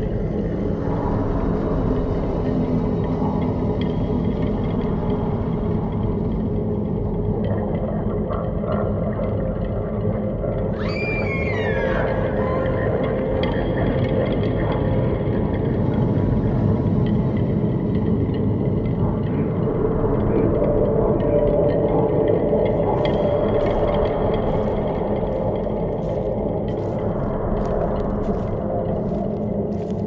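Dark ambient horror-soundtrack drone: a dense low rumbling bed with sustained tones, and an eerie falling pitched sweep about eleven seconds in.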